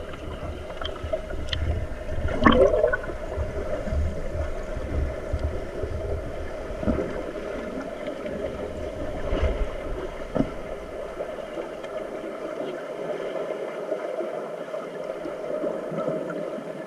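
Muffled underwater sound in a swimming pool, heard from a camera below the surface: water churned by finned swimmers and rising air bubbles, over a steady hum. A few short knocks break through, the loudest a few seconds in, and the low rumbling stops about three quarters of the way through.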